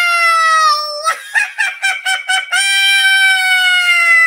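Shrill, high-pitched cartoon character voice: a long held squeal that sinks slowly in pitch, then a quick run of about six short staccato notes like laughter, then a second long squeal that again sinks slowly.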